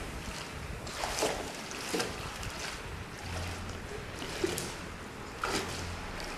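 Someone wading through shallow seawater, with a few short splashes of the legs in the water over a steady wash of water, and a low wind rumble in the second half.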